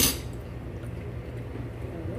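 A steady low hum, with one short sharp click right at the start.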